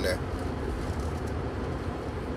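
Steady low road rumble heard from inside the cabin of a moving car.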